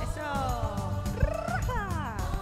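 A woman singing a wordless vocal run that slides down in pitch, then rises with vibrato and falls again, over a backing music track.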